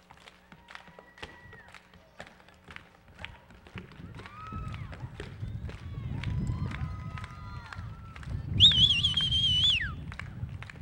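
Footsteps and hard-shoe taps on the wooden stage boards, with faint voices. About 8.5 seconds in, a loud, high-pitched wavering squeal lasts about a second and then falls away.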